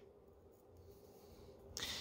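Near silence: room tone with a faint steady hum, and a short soft hiss near the end.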